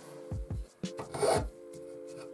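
One stroke of a hand file across an aluminium workpiece, about a second in, with background music throughout.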